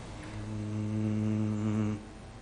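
A male vocalist humming one low, steady note for about a second and a half, which stops abruptly.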